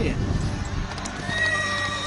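A horse whinnying in one long call that starts about halfway through, over background music.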